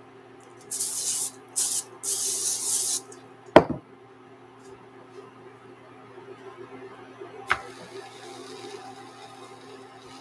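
Aerosol olive oil cooking spray hissing onto a non-stick pan in three short bursts, the last about a second long. It is followed by one sharp knock about three and a half seconds in.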